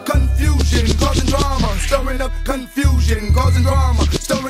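G-funk gangsta rap track with vocals over a heavy bass line; the bass drops out briefly about two and a half seconds in.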